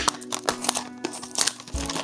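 A Disney Doorables cardboard blind box being handled and pulled open by hand: crinkling and rustling with a string of small clicks and crackles, over steady background music.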